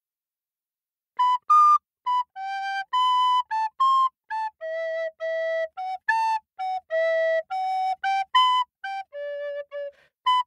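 A flute playing a lively melody of short and held notes, starting about a second in.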